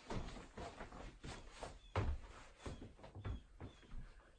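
Blue jays squawking in a rapid run of short, harsh calls, several a second, picked up indoors from outside an office window.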